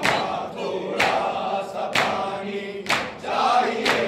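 Men chanting a nauha (Shia lament) in chorus, with matam: hands striking chests in time, about once a second.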